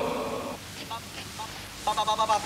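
A pause in a rehearsal recording: background hiss with a few faint, short vocal sounds, and a voice starting up again near the end.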